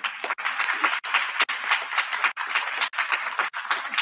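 Audience applauding: a dense patter of many hands clapping, thinning out at the very end.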